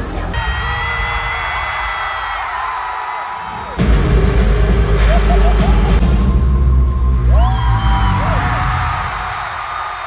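Arena crowd screaming and cheering. About four seconds in, loud live concert music with a heavy bass beat starts suddenly, and the crowd keeps screaming over it.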